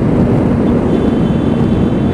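Motorcycle at road speed: loud, steady wind rush on the microphone over a constant engine hum.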